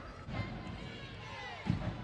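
Faint basketball arena background: a low crowd murmur with faint high squeaks from the court, and a dull thump near the end.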